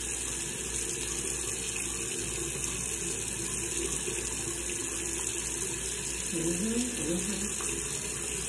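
Tap water running steadily from a faucet into a sink.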